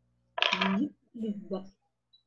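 A person's voice on the call: two short utterances that the recogniser did not make out, the first about half a second in and the second just after one second.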